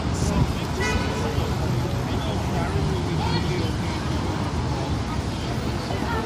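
Busy city-street ambience: many passers-by talking close around over steady traffic noise, with a brief high tone, perhaps a horn, about a second in.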